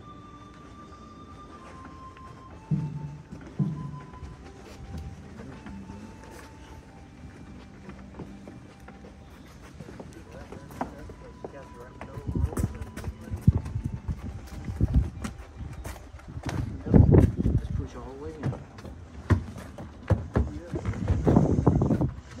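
Soft background music with long held notes, then many shuffling footsteps, knocks and bumps from a group of pallbearers carrying a wooden casket, with low voices mixed in. The footsteps and knocks get louder and busier in the second half.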